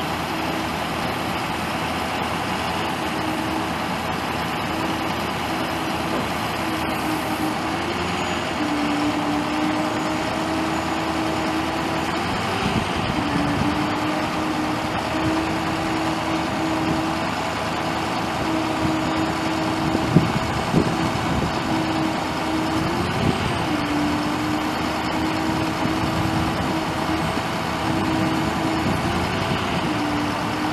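The 2004 Ford F550's 6.0-litre V8 turbo diesel engine running steadily. A hum runs through it whose pitch dips briefly and recovers several times, and there is a single sharp knock about two-thirds of the way in.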